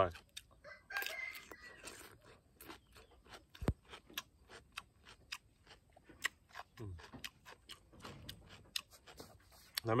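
Raw cucumber being chewed, a run of many short, crisp crunches through the whole stretch. A rooster crows in the background about a second in.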